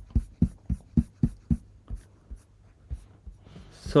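Computer keyboard keys pressed repeatedly, about four clicks a second, then fewer and fainter after about two seconds.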